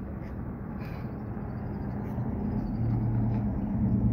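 Outdoor traffic: a motor vehicle's engine hum with steady low tones that grows gradually louder, as if a car is approaching or idling close by.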